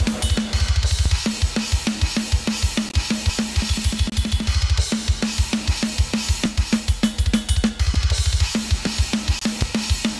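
Hertz Drums virtual drum kit playing a metal groove through drum-bus processing: kick, snare, hi-hat and cymbals, with three quick bursts of double-kick. The bus processing is a little too extreme.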